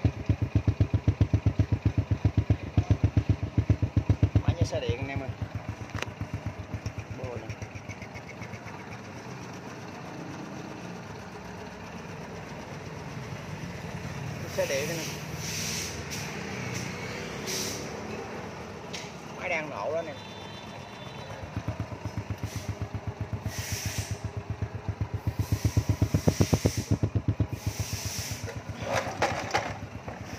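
Honda Wave 100's small single-cylinder four-stroke engine idling with an even, rapid beat, smooth enough to be called "like an electric bike". It is louder at first and again past the middle as the phone passes near the exhaust, and softer in between.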